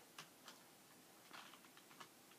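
Computer keyboard typed slowly with one hand: a few faint, separate key clicks, spaced roughly half a second to a second apart.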